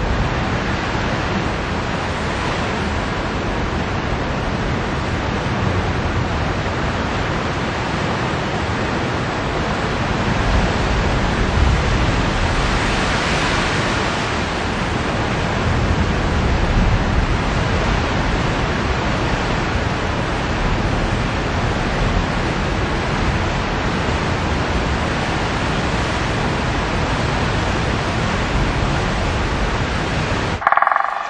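Ocean surf washing over rocks: a continuous rushing noise that swells in the middle.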